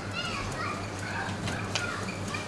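Quiet children's voices in the background, with a couple of light clicks near the end.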